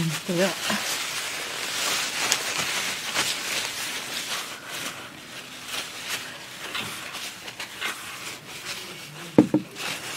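Tissue paper rustling and crinkling as spilled water is wiped from a desk: a dense crackle of small sounds that thins out later, with a short sharp knock near the end.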